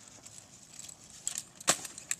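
Skateboard on a paved street: a few sharp clacks over a faint steady hiss, the loudest clack about a second and a half in.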